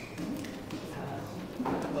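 Low, indistinct voices in a large room, with a few light knocks; a man's voice starts speaking near the end.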